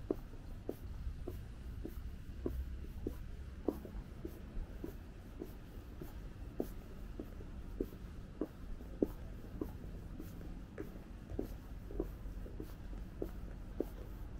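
Footsteps on a paved stone sidewalk at a steady walking pace, about two steps a second, over a constant low rumble of distant city traffic.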